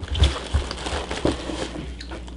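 Light handling noise: soft rustling with a few low bumps in the first second and a half, as a paper packet is passed from hand to hand and lifted to be smelled.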